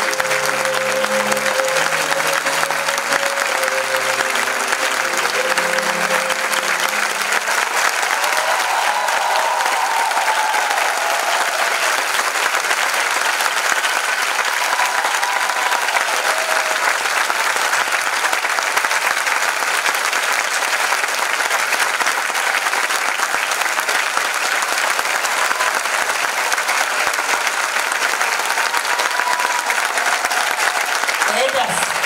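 A theatre audience applauding steadily for ballet dancers taking their bows. Music plays under the clapping for the first several seconds and ends about seven seconds in. A few voices call out above the applause now and then.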